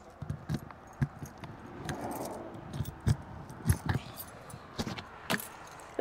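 A bunch of keys jangling, with a series of sharp clicks and knocks as a key works the lock of a camper trailer's exterior storage compartment door and the door is opened.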